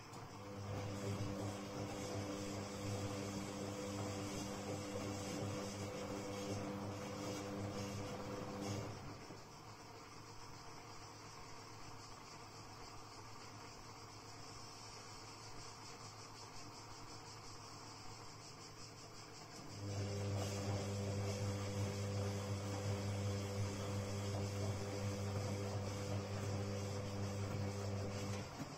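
Castor C314 front-loading washing machine on a heavy cotton wash: the drum motor hums steadily while the drum turns the laundry for about nine seconds, stops for about eleven seconds, then hums again as the drum starts turning once more.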